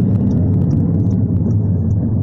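A steady, loud low rumble with no distinct events.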